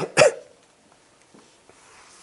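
A man coughing twice into his hand, two short coughs in quick succession at the very start.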